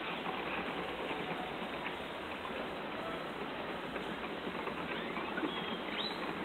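Steady hiss and patter of running water in a pond, with a few faint short bird chirps.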